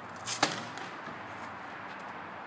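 A single paintball marker shot: a sharp pop with a short hiss of air, about half a second in.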